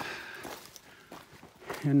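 Footsteps on a dry, leaf-strewn dirt trail, soft and irregular, as a hiker walks. A man's voice starts speaking near the end.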